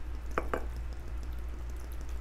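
Apple cider vinegar being poured from a bottle into a glass jar packed with fire cider ingredients, with two brief gurgles about half a second in, over a low steady hum.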